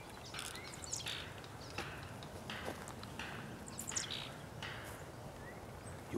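Footsteps crunching through dry leaf litter at a steady walking pace, one step about every two-thirds of a second, with a few faint high bird chirps.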